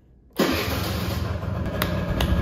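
A 1995 Honda Elite SR50's small two-stroke engine starting on the electric starter and then running steadily. A single hand clap comes near the end.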